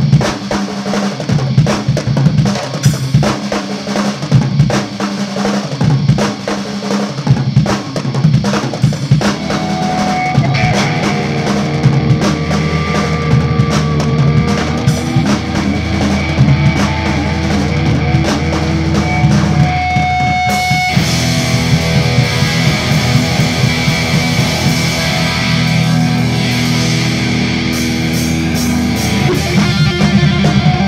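Live punk/metal band playing loud. The drum kit drives the opening seconds, sustained electric guitar and bass notes come in about nine seconds in, and after a brief break the full band comes in with a fuller sound about twenty-one seconds in.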